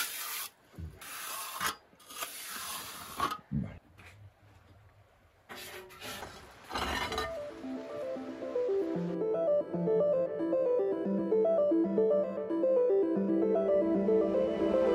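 A steel plastering trowel scraping across wet render on a stone wall in several strokes, the final coat being smoothed on. From about seven seconds in, background music with a steady run of notes takes over.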